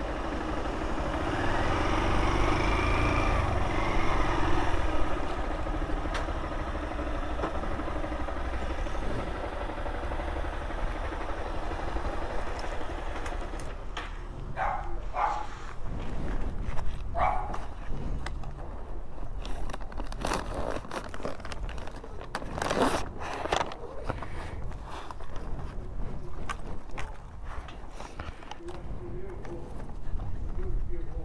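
Honda CG Fan 160's single-cylinder engine running at low speed, with a steady low rumble, until it stops about halfway through. After that come scattered short knocks and a few brief sharp calls.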